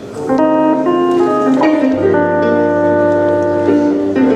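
Jazz instrumental intro: sustained organ-sounding keyboard chords with electric guitar, changing chord every half second or so, and a low bass line entering about halfway through. The tenor saxophone is not yet playing.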